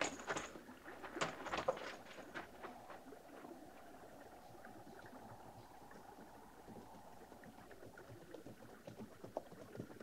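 Faint radio-drama sound effect of a stream running, with a few light knocks and clicks in the first two seconds.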